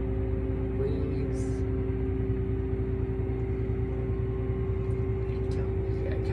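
John Deere T660 Hillmaster combine's engine running steadily at about 1200 rpm, heard from inside the cab as an even low rumble with a steady mechanical whine over it.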